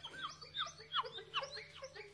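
Bird chirping: a quick series of short chirps, each falling sharply in pitch, about three a second, over a faint low steady hum.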